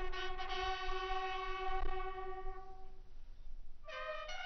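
Military bugle call: one long held brass note that fades out about three seconds in, then the next phrase of the call begins near the end.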